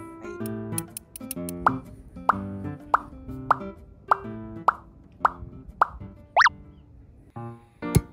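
Background music of short plucked notes, with a sharp pop sound about every 0.6 s through the middle and a quick rising whistle-like sweep near the end.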